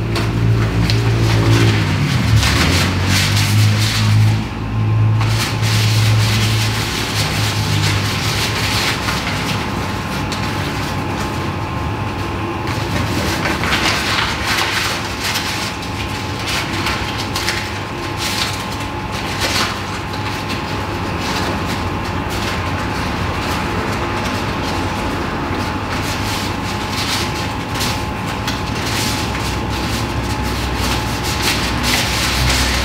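A continuous low rumbling drone. Held low notes shift in pitch over the first several seconds, then it settles into a steady hiss-laden bed with a faint high held tone.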